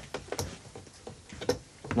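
A few sharp clicks and light ticks of a hand leather strip-cutting gauge being set to width and fitted on the workbench, with two clearer clicks about half a second and a second and a half in.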